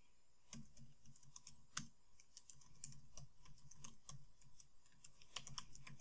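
Faint, irregular key clicks of typing on a computer keyboard.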